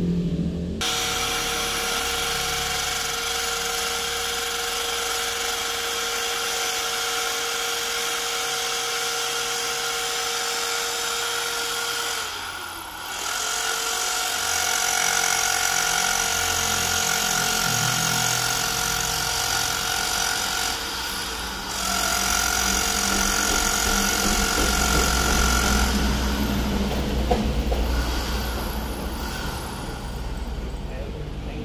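Electric drill running as it bores a screw hole into a wall. The motor's whine sags in pitch and recovers about twelve seconds in, stops briefly around twenty-one seconds, then runs on, with a deeper rumble near the end.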